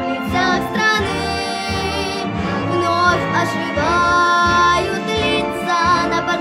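A ten-year-old girl singing a Russian-language wartime remembrance song over instrumental accompaniment, holding long notes with vibrato.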